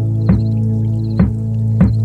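Slow instrumental background music: a held low note with three soft struck notes over it.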